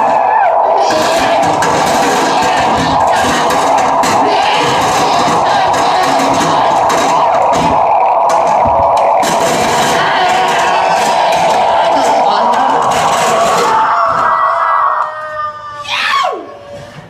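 Loud, dense wall of harsh noise music that holds steady, then thins out near the end and closes with a steep falling pitch sweep.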